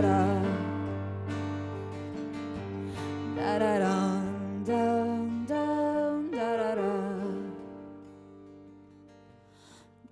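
A live band performing a song: a woman sings long notes with vibrato over guitar. The music dies away almost to silence near the end.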